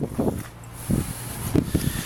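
A few soft, irregular footsteps, with light wind on the microphone.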